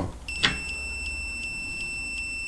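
Digital multimeter's continuity buzzer giving a steady high-pitched beep with its probes across the terminals of a microwave oven's safety thermostat (thermal cutout). The beep signals continuity, a resistance of practically zero: the thermostat is closed and good.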